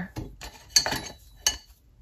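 Small clatter of hard plastic items being handled on a desk, with two sharp clicks about three quarters of a second apart, as a glue pen is picked up and its cap pulled off.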